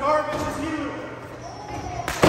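A voice shouting in an echoing hall, with thuds of wrestlers' feet and bodies on the ring canvas and a sharp impact right at the end as a throw begins to land.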